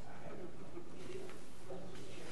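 Indistinct, muffled voices of people talking away from the microphones, with a few small clicks.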